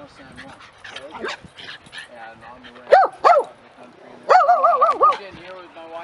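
A dog gives two quick yips about three seconds in, then a longer whining cry that wavers up and down several times.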